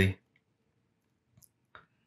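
The tail of a man's word, then two faint, short clicks from computer controls about a second and a half in, a fraction of a second apart.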